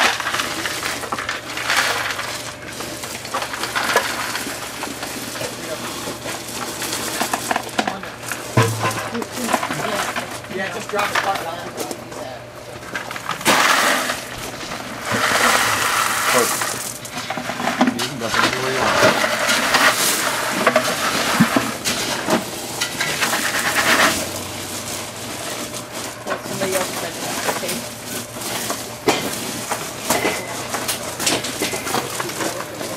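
Gravel poured from plastic buckets onto a gravel bed and raked over by hand: stones clattering and rattling in repeated pours, the longest and loudest spell about halfway through.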